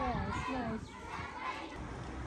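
Children's high-pitched voices calling and chattering in the street during the first second, then fading to a quieter background.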